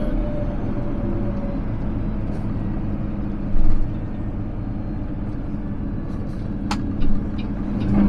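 Steady drone of a Peterbilt 389's diesel engine and road noise as the empty truck cruises down the highway, with a brief thump about three and a half seconds in and a sharp click near the end.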